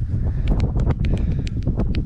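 Strong wind buffeting the microphone with a steady low rumble. A quick run of about ten small, sharp clicks comes in the second half.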